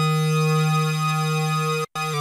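Korg minilogue xd analog synthesizer holding a single lead note from a square and a sawtooth oscillator, in unison mode with a little detune. The note is steady in pitch and rich in overtones, and stops abruptly just before the end.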